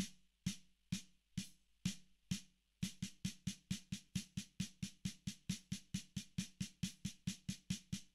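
A snare drum struck with drumsticks in an even triplet exercise. The strokes come slowly, about two a second, then from about three seconds in they run steady and faster, about five a second, in alternating right-right-left-left double strokes.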